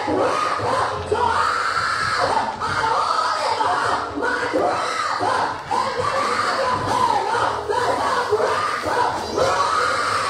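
A woman's voice shouting and exclaiming without pause into a microphone, amplified through the church's speakers, high and strained. Other voices may be calling out with her.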